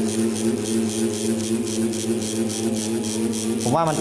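Tattoo machine buzzing steadily as the needle runs into practice skin, packing solid colour with up-and-down sweeps. A man's voice comes in near the end.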